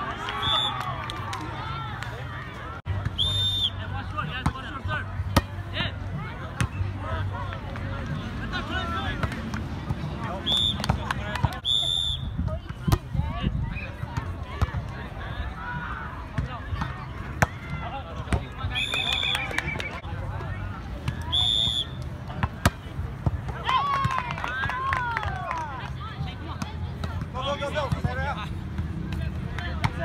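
Volleyball being struck by players' hands and arms in an outdoor game, sharp slaps scattered through a rally, over the voices of players and onlookers. Short high-pitched chirps come in several times.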